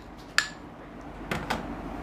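A steel spoon clinking against a bowl while cream is spooned in: one short ringing clink about half a second in, then two quicker knocks about a second later.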